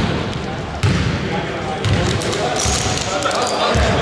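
A basketball being dribbled on a hardwood court: several bounces about a second apart.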